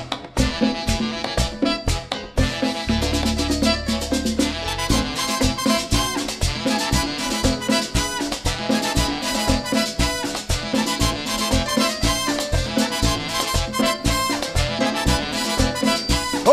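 Live merengue band playing an instrumental stretch without vocals: fast, steady percussion including congas under pitched instruments, with a held low bass note about three seconds in.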